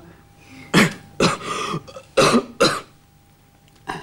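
A man coughing: four short, loud coughs in two pairs, the first pair about a second in and the second a little past two seconds.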